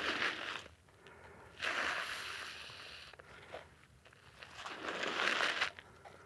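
Clothing and gear scraping and rustling over sandy, gritty dirt as a person low-crawls forward, in three separate pulls of a second or so each with pauses between.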